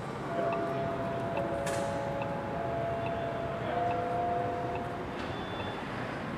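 Street traffic noise with a faint, steady whine that steps slightly higher a little past halfway through, and a short hiss about two seconds in.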